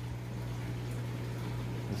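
Aquarium water bubbling from an air line, a steady fizzing, over a constant low hum.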